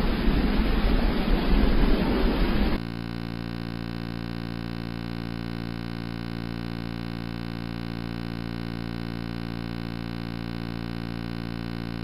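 Loud, rough hiss of recording noise that cuts off abruptly about three seconds in, followed by a quieter, steady buzzing hum with many even overtones.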